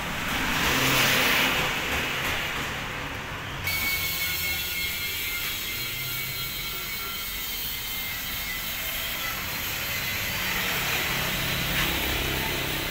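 Road traffic: a vehicle goes by in the first two seconds, then a steady traffic noise with a low engine hum.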